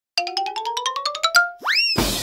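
Comic intro jingle: a quick run of short struck notes climbing in pitch, about ten a second, then a single rising swoop like a slide whistle.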